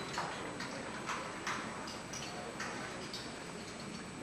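Light, sharp ticks and clicks at an irregular pace of about two a second, over a faint steady high whine.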